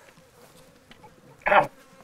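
Flies buzzing faintly, with one short, louder sound about one and a half seconds in.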